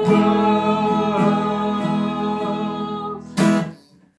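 Acoustic guitar and a man's and two women's voices singing together, holding the song's final notes. The music fades, a last strummed chord rings about three and a half seconds in, and then it dies away.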